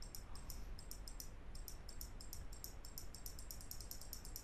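Computer mouse button clicking repeatedly, light sharp clicks about four or five a second and coming faster toward the end, over a faint steady low hum.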